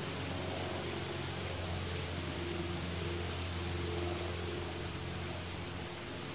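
Steady background hiss with a low hum underneath and no distinct events: the outdoor ambience of the recording.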